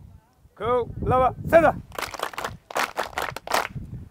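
A man's voice sounding three drawn-out syllables, followed about two seconds in by a quick run of short, sharp, noisy bursts.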